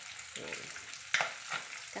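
Fish frying in hot oil with a steady sizzle and a sharp crackle of spattering oil about a second in.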